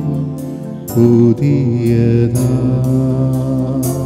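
A man sings a Christian devotional song into a microphone with electronic keyboard accompaniment, holding long, sustained notes.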